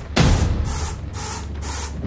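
Trailer soundtrack: rhythmic pulses of hiss, about three a second, over a steady low bass drone.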